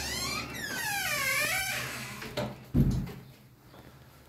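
A door squeaking on its hinges as it swings open, in wavering squeals that dip and rise, followed by a single thump a little under three seconds in.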